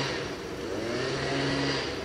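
A motor vehicle's engine running, a steady low note with a fainter pitch rising and falling in the middle.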